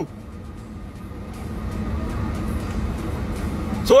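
Car cabin noise: a low, steady rumble of the engine and road from inside a moving car, growing louder over the first couple of seconds and then holding.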